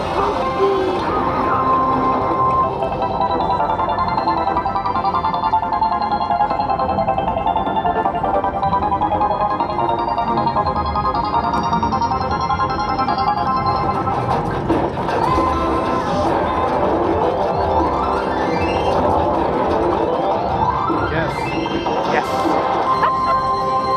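Video slot machine playing its free-spin bonus music: a steady run of bright electronic chime tones while the reels spin. Near the end come rising sweeps as the bonus symbols land for a retrigger of the free spins.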